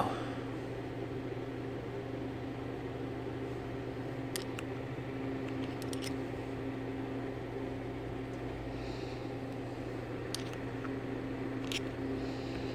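Steady low electrical hum, like a fan or appliance running in the room, with a few faint light clicks scattered through it, such as a metal pick tapping the hub's bearing seal.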